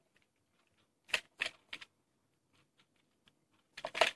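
Short, sharp plastic clicks and taps as a small plastic cigarette holder is worked out of its clear plastic box: three quick clicks a little past a second in, then a few more near the end.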